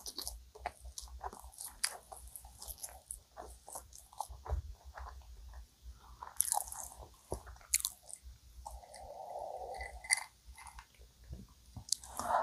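Close-miked mouth chewing a soft cream-filled donut, with irregular small wet clicks and smacks and a few louder ones. Near nine seconds in there is a soft, steady hiss lasting about a second and a half.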